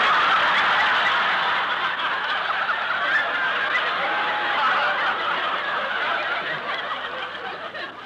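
A large studio audience laughing, one long laugh that is loudest at the start and slowly dies away toward the end, heard through an old 1940s radio broadcast recording.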